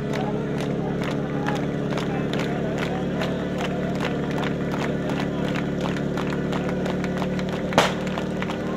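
Portable fire-sport pump engine running steadily, with the crowd clapping in rhythm about twice a second. Near the end a single sharp report, the start signal.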